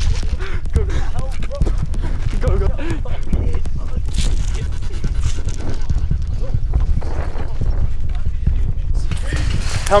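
Footsteps of people running hard on rough ground, a quick run of sharp footfalls over a constant rumble of movement noise on a handheld phone's microphone, with brief breathless voices now and then.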